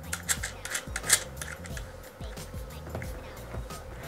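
Small clicks and scrapes of fingers working a speaker binding post and bare speaker wire, as the wire is fitted into the terminal and the knob is screwed down. Soft background music with a low bass line plays underneath.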